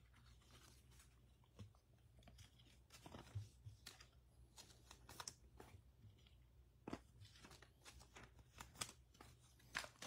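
Near silence with faint, scattered taps and rustles of trading cards being set down and handled on a table.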